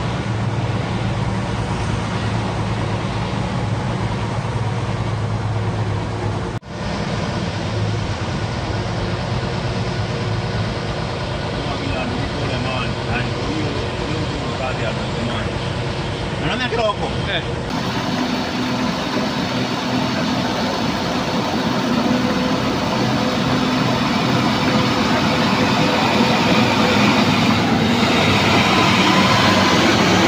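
Steady vehicle engine running, heard from inside the cab while driving through floodwater, with faint indistinct voices. The sound briefly drops out once and changes character about two-thirds of the way through.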